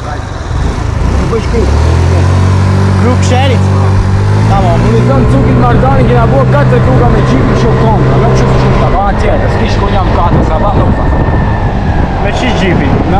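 A small motor scooter's engine pulls away and runs at a steady pitch that steps up once, then fades near the end, under street traffic noise.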